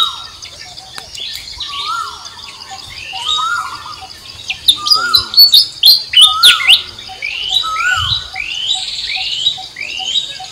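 Songbirds chirping, with short rising calls repeating about once a second and a quick run of louder, sharp chirps in the middle.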